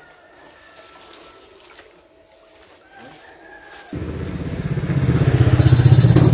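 Electronic fish shocker (16-FET, two-transformer) buzzing as it pulses current into the water: a low, rapidly pulsing buzz that starts suddenly about four seconds in and grows louder, with a high whine joining it near the end.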